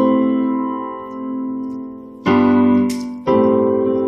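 Digital piano playing held chords. An A octave under C-E-G-C rings and slowly fades, then two new chords are struck, about two and a quarter seconds in and again a second later.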